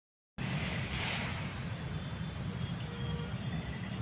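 Wind buffeting a phone microphone outdoors: a steady low rumble with a hiss over it, cutting in suddenly out of silence a moment after the start.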